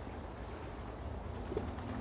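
Steady low outdoor background rumble, with one faint short bird call about one and a half seconds in.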